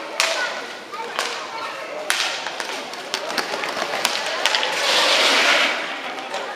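Rink hockey play in an echoing hall: sharp clacks of sticks striking the hard ball, over roller-skate wheels on the floor and voices from players and spectators. There is a louder rush of noise about five seconds in.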